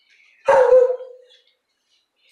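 A dog barks once, loudly, about half a second in, the bark trailing off over a fraction of a second.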